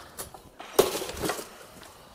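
A few light knocks and one louder knock with a short clatter a little under a second in, from robot parts and tools being handled on a concrete floor.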